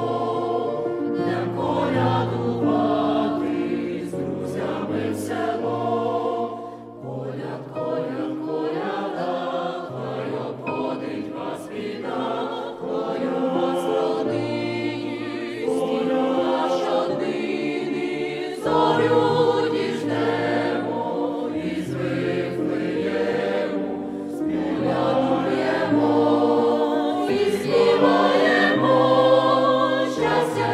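A choir singing a Ukrainian Christmas carol (koliadka) in several voice parts, over sustained low bass notes.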